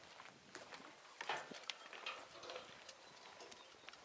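Faint, irregular clicks and scuffs of footsteps and handling noise from someone walking with a handheld camera, with a louder scuff about a second in.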